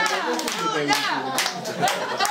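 A small crowd of party guests clapping, with several voices talking and calling out over the applause.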